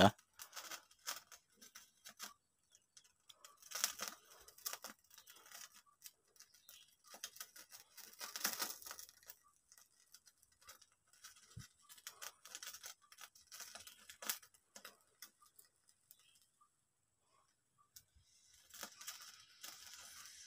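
Faint, irregular crackling and spitting from skewered intestines grilling over a gas-stove burner, as oil cooks out of them and flares in the flame. The crackles come in small clusters, busiest about four seconds in, around eight to nine seconds, and around twelve to fourteen seconds.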